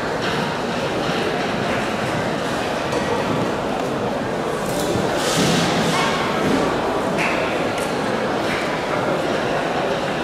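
Indistinct chatter of many people echoing in a large indoor sports hall, steady throughout, with a brief louder noise about five seconds in.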